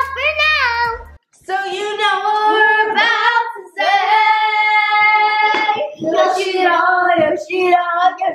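Young girls singing together, with long held notes, after a short break about a second in.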